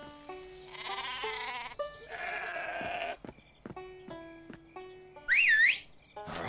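Light cartoon music of short stepped notes with sheep bleating over it. Near the end comes a short, loud whistle that rises and falls twice.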